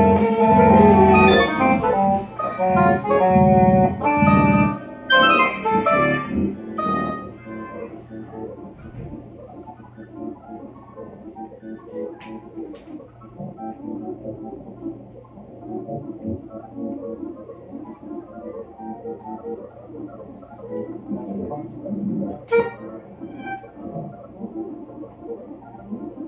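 Improvised keyboard synthesizer music: a run of loud, plucked-sounding notes for the first several seconds, then thinning out to a quiet, sparse texture of scattered soft notes.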